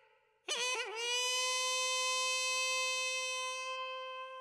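A single wind instrument of the Korean traditional accompaniment playing one long note with a bright, reedy tone. The note enters about half a second in with a couple of quick dips in pitch, then holds steady and thins out slightly near the end.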